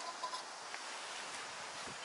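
Backpacking stove burner giving a faint, steady hiss as it heats a pot of water inside a foil windscreen.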